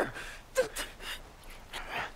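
A woman gasping in short, frightened breaths with a few brief whimpering catches, a hand gripping her throat.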